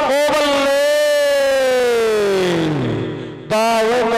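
A male commentator's long, drawn-out shout: one held note whose pitch falls steadily over about three seconds. Quick speech starts again near the end.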